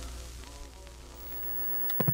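Music with held notes under a hiss of TV static, ending in sharp clicks and a low thump near the end as an old-TV switch-off sound effect.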